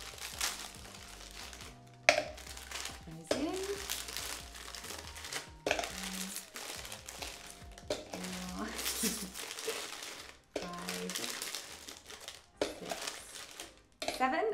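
Crinkly plastic Oreo packet rustling as the cookies are pulled out of it, with a few sudden clicks and knocks.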